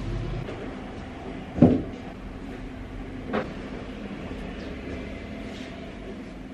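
Bedding handled while making a bed: a sharp thump about a second and a half in and a softer one a couple of seconds later, as the pillow and bed are handled, over a steady low hum.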